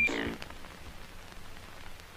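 A voice trails off at the very start, then only a faint steady hiss with scattered crackles remains: surface noise of an old, worn film soundtrack.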